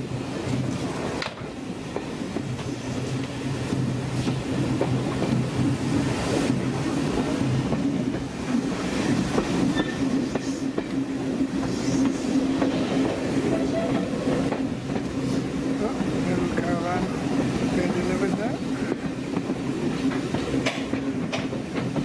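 A West Somerset Railway train running, heard from inside a passenger carriage: a steady rumble with wheels clicking over rail joints now and then.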